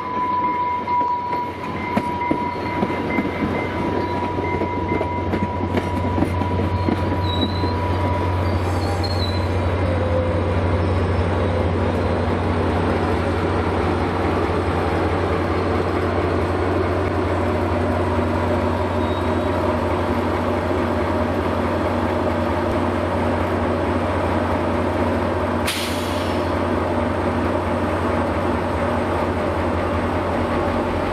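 New Mexico Rail Runner Express passenger train rolling past: bilevel coaches running steadily over the rails with a high, steady wheel squeal that fades out after several seconds. The diesel locomotive pushing at the rear comes by later, under a steady low drone, and there is one short sharp click near the end.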